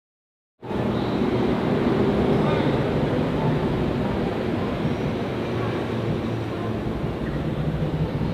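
Silent for about half a second, then a steady outdoor background of road traffic noise, a continuous low rumble.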